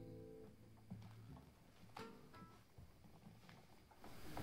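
The final chord of acoustic guitar and upright bass dies away in the first half second, then near silence with a few faint clicks and small handling knocks.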